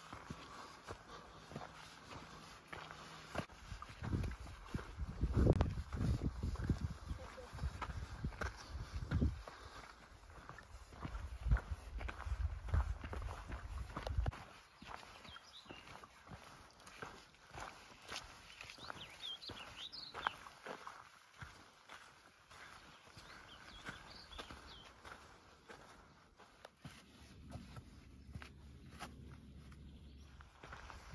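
Hiking footsteps on a dry dirt and rocky trail, an uneven run of soft crunches and scuffs. A louder low rumble rises under them from about four seconds in and fades at about fourteen seconds.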